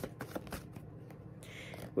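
A tarot deck shuffled by hand: a quiet run of irregular card clicks and flicks.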